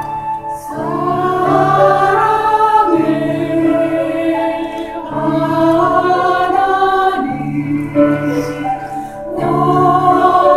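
Mixed church choir singing a Korean hymn with piano accompaniment, the voices coming in under a second in after a piano passage and moving in sustained phrases with brief breaths between them.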